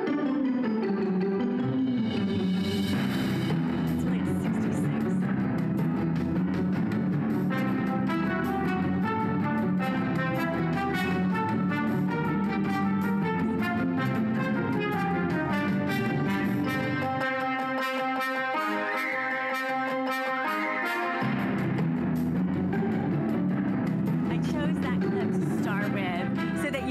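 Latin music playing loud from a CD on a Bose Wave Music System IV tabletop speaker. Partway through, the low bass drops away for a few seconds and then returns.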